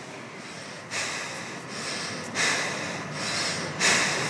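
A person breathing loudly, three breaths about one and a half seconds apart, each starting sharply and fading over about a second.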